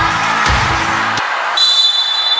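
Music with a steady thumping beat plays and cuts off abruptly about a second in; just after, a referee's whistle starts, one steady high blast held to the end, the usual signal for the serve in volleyball.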